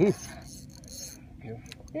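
Mostly speech: a man's short, loud 'ooh' at the start and a brief word near the end, over a faint, steady background hiss of wind and water.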